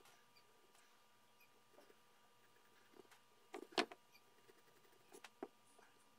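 A few faint, brief scratches and taps of a slim hand tool on a hard, dried paper-clay figure as a mouth is marked out on it, loudest in a short cluster about three and a half seconds in.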